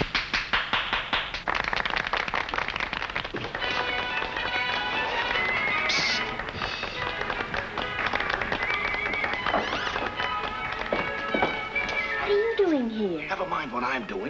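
A crowd applauding with dense clapping for the first few seconds, then light orchestral sitcom underscore music takes over.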